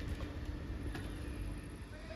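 Tågab X10 electric multiple unit standing in a station with a steady low hum, with a faint click about a second in.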